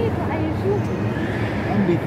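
Indistinct voices of several people talking at once, overlapping and unintelligible.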